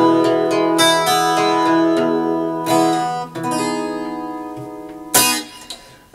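Acoustic guitar playing the closing chords of a song: a few strummed chords that ring and slowly fade, then a short, sharp hit on the guitar near the end.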